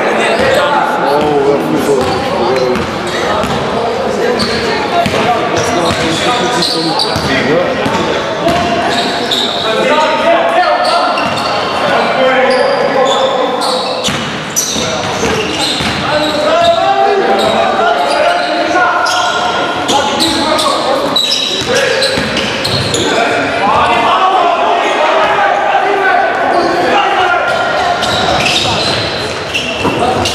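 Basketball game sounds echoing through a sports hall: a ball bouncing on the court floor again and again, with players' and spectators' voices calling out.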